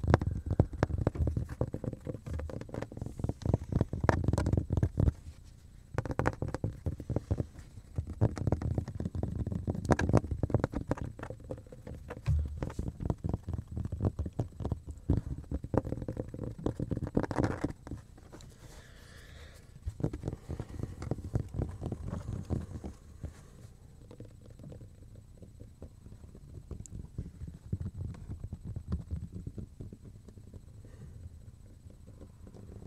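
A cutting board handled right against the microphone: quick runs of small taps and scrapes from fingers on its surface, with a deep, muffled rumble from the close handling. There are a few short pauses, and the last part is softer.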